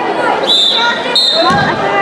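Referee's whistle blown in two short, steady blasts, followed by a low thump about a second and a half in, over shouting spectators.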